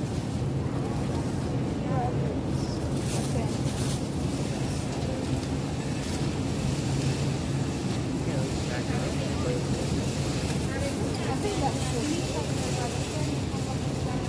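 Steady low hum of a supermarket produce aisle, with brief rustles of a thin plastic produce bag as scallions are handled.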